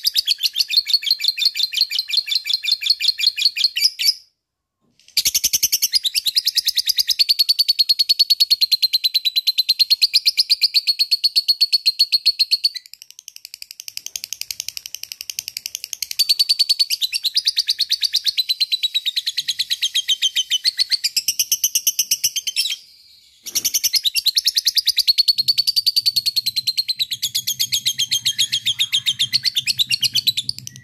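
A lovebird giving its long 'ngekek' chatter: fast runs of sharp, high-pitched chirps repeated without letup, breaking off briefly about four seconds in and again about twenty-three seconds in, with a softer stretch in between.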